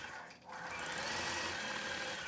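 Gammill Statler Stitcher computer-guided longarm quilting machine running and stitching out a quilting pattern: a steady mechanical hum that dips briefly about half a second in.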